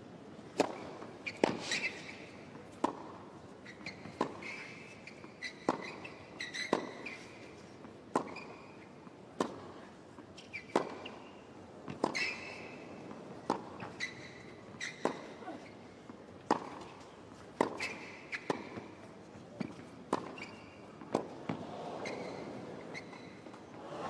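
A long tennis rally on a hard court: rackets striking the ball back and forth with a sharp pop about every second and a half, ball bounces between the strokes.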